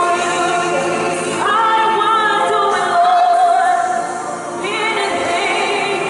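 Women of a church praise team singing a gospel worship song into microphones, with long held notes, one of them wavering about halfway through.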